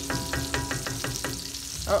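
Wooden spoon stirring thick tomato sauce in an enamelled cast-iron Dutch oven, knocking against the pot about five times a second in a quick run of taps, over a steady sizzle.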